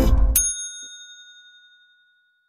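The last strummed acoustic-guitar chord of the intro music dies away. About a third of a second in, a single bright bell ding sounds and rings out, fading over about a second and a half.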